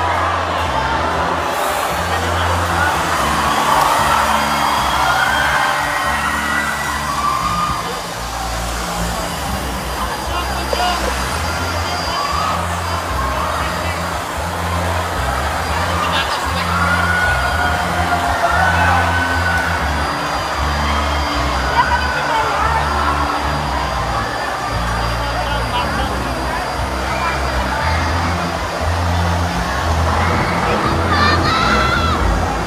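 Live concert music through the PA: a band playing with a loud, heavy bass beat and vocals over it, picked up by a phone on stage.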